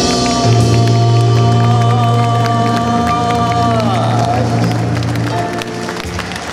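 Jazz combo of keyboard, upright bass and drums holding a final sustained chord under a male singer's long last note, which slides down and fades about four seconds in. Audience clapping and cheering start as the song ends.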